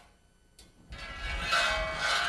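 A ball rolling down a metal loop-the-loop track and around the loop, released from two and a half times the loop's radius, just high enough to make it over the top. The rolling starts about a second in and grows louder, with a faint ringing from the metal rail.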